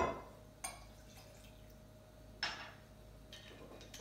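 Honey whiskey poured from a shot glass into a stemmed wine glass, with two light glass clinks about two seconds apart; the first leaves a short ringing tone.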